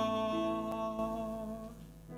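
The final held note of a worship song: a woman's voice sustaining one long note over a held backing chord, both dying away near the end.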